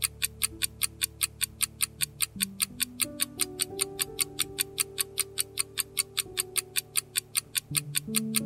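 Countdown timer sound effect ticking quickly and evenly, about four ticks a second, over soft sustained background music chords that shift every few seconds.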